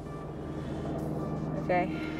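A steady low engine hum, such as a motor vehicle running nearby. A woman says a short word near the end.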